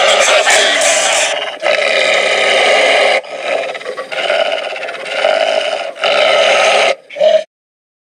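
Wolves growling in several long stretches, with short breaks between them and a brief last growl, after music cuts off about a second in. The sound stops abruptly half a second before the end.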